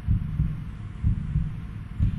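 Deep, throbbing heartbeat-style suspense sound effect: a steady run of low thuds with no melody, a studio cue that builds tension before a result is read out.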